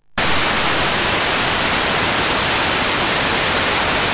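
Loud steady hiss of static starting abruptly just after a moment of silence: the audio of an analog satellite TV receiver after the channel's signal has been switched off.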